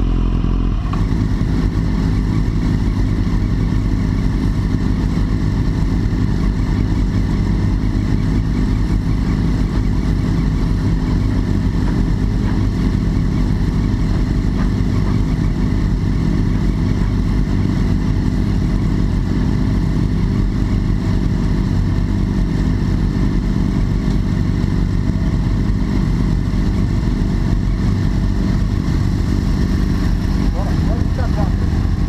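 BMW S1000RR inline-four engine idling steadily, heard close up.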